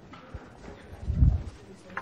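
Footsteps on a hard floor with faint clothing rustle as a man walks a few paces, the low thuds heaviest about a second in.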